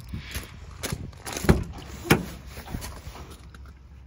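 Footsteps and knocks from the handheld camera while walking, a series of short sharp taps roughly half a second apart, the loudest about a second and a half and two seconds in.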